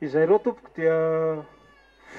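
A man's voice through a handheld microphone: a short spoken phrase, then one long, steadily held vowel of about two-thirds of a second.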